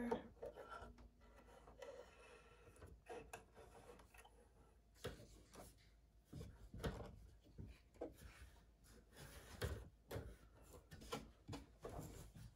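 Faint scattered clicks, taps and rubbing as a spool of thread is changed and the Husqvarna Viking Topaz 50 embroidery machine is threaded and its hoop handled; between the small knocks it is near silence.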